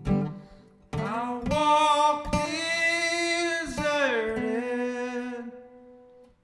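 A man's singing voice holds one long note, then slides down to a lower note that fades away, over a few strums of an acoustic guitar.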